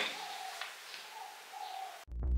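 A bird calling faintly twice in the background, two short steady calls.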